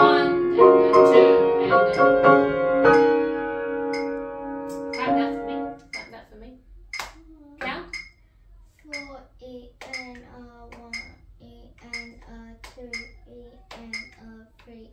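Grand piano played for about six seconds, sustained notes and chords, then stopping. After it come hand claps in a steady beat, about two a second, with a child's voice counting along.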